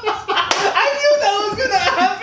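Several young men laughing hard together, with one sharp slap about half a second in.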